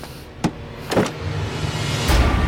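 A car's rear door opening: two short sharp clicks about half a second apart, as the latch releases and the door swings. A low music rumble comes in under it.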